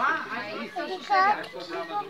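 A small child's high-pitched voice, talking and babbling in short bursts.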